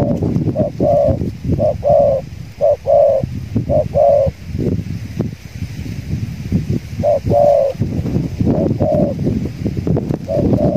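Spotted doves cooing in short repeated phrases of two or three notes, one run of phrases through the first four seconds and another from about seven to nine seconds, over a steady low rumble.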